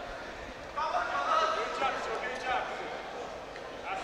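Raised, shouting voices from people around the cage, fainter than the commentary, over a steady background hiss of the venue.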